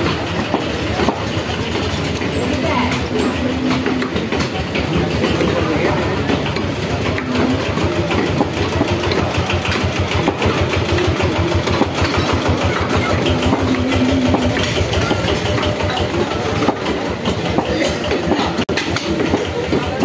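Busy street-market background noise: an engine runs steadily nearby with a pulsing low rumble while people talk indistinctly in the background.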